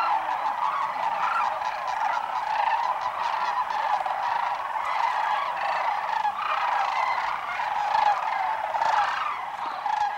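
A large flock of sandhill cranes calling all at once: a continuous, dense chorus of many overlapping calls.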